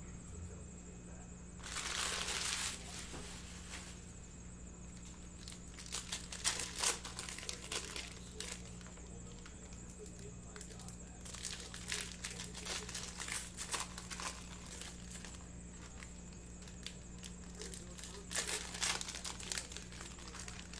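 Foil trading-card packs being torn open and their wrappers crinkled, with cards handled and set down on a stack. A longer burst of tearing and rustling comes about two seconds in, then short bursts of crinkling recur through the rest.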